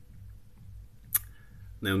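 A single sharp click about a second in, against quiet indoor background; a man's voice begins near the end.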